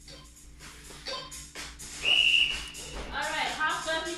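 A single high, steady electronic beep lasting about a second, about halfway through, over background music with singing.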